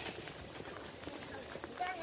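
Footsteps on brick paving as someone walks across the platform, with people talking in the background; a voice comes in more clearly near the end.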